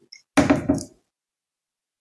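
A man's brief voiced sound, two quick pulses within about half a second, such as a short chuckle.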